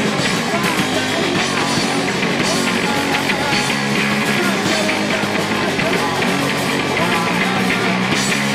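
Live punk rock band playing loudly: distorted electric guitars, heavy bass guitar and drums, with shouted vocals at the microphone. The bass is prominent and the whole mix is heavy in the low end.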